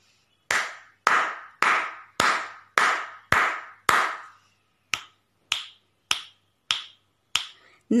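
Seven hand claps about half a second apart, followed by five finger snaps at the same even pace, each snap sharper and thinner than the claps.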